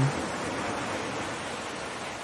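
Beach ambience of ocean surf: a steady wash of waves that eases slightly toward the end.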